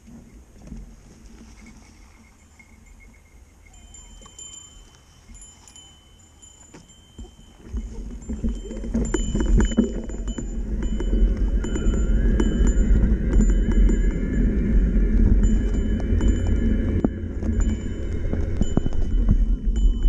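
Mountain bike with fat knobby tyres riding a dirt trail: quiet at first, then from about eight seconds in a loud rumble of tyres on dirt and wind on the microphone, with rattles and clicks from the bike.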